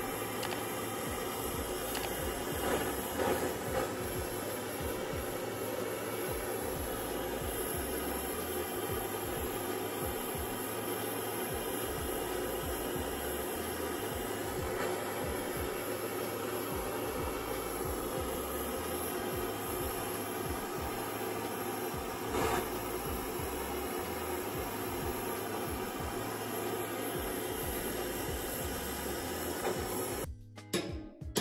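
Handheld gas torch burning with a steady hiss, its flame heating a rototiller shaft bearing whose inner race is seized to the shaft, to expand it. A couple of brief knocks come about three seconds in and again later.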